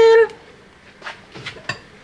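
A spoken word ends at the very start, then a few light clicks and knocks as a bowl is handled, spread over the second half.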